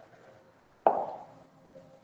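A single sharp knock about a second in, with a short ring-out that fades over half a second.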